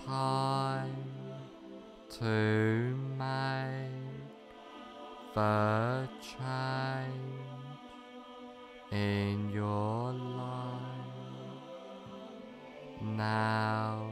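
Meditation background music: low, sustained chant-like tones, a new one swelling in every two to four seconds and slowly fading.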